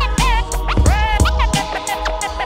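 Vinyl scratching on a Technics turntable over a hip-hop drum beat: a sample is pushed back and forth by hand, so its pitch slides up and down in quick glides between the kicks and snares.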